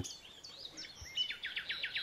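Birds chirping faintly: scattered high twitters, then a rapid run of repeated chirps from about halfway through.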